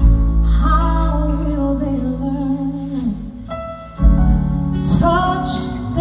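Live gospel song sung by women's voices with a live band of guitar, bass and drums, heard in a large hall. The voices hold long notes with vibrato; the music drops back briefly about three and a half seconds in, then the band comes back in loudly.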